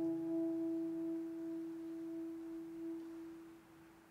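A single held note near E above middle C, from the soprano saxophone and the open grand piano, dying away slowly over about three and a half seconds and thinning to an almost pure faint ring.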